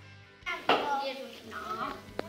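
Background music fading out, cut off about half a second in by a child's voice that starts loud and carries on talking.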